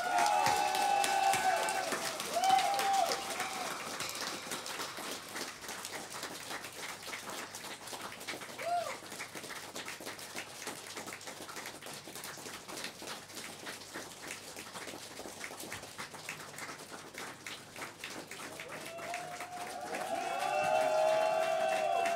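Audience clapping and cheering. There are shouts in the first few seconds, then it thins to steadier clapping, and the cheering swells again near the end.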